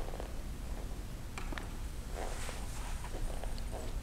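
Quiet room tone: a low steady hum with a few faint rustles and light clicks.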